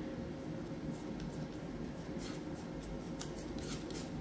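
Metal palette knife scraping and smoothing sculpture paste in a run of short strokes starting about a second in, over a faint steady hum.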